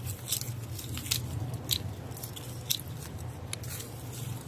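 Hand pruning shears snipping twigs and leaves: a series of sharp, irregularly spaced cuts with leaves rustling between them. A steady low hum runs underneath.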